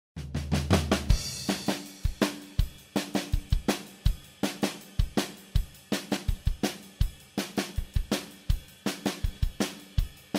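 Background music: a drum kit playing a steady beat of kick, snare and hi-hat, with a low bass note under the first second.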